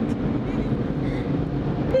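Automatic car wash dryer blowers running, a steady low rumble heard from inside the car's cabin.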